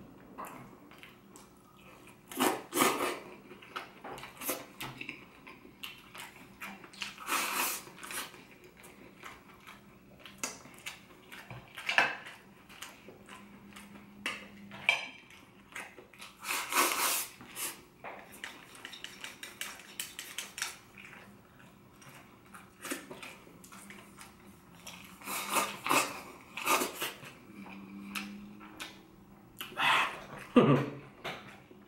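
Eating sounds: bites and chewing of crispy battered chicken, with wooden chopsticks clicking against a ceramic bowl, in short scattered bursts.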